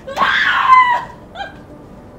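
A woman screaming in distress: one loud cry lasting under a second, then a short second cry.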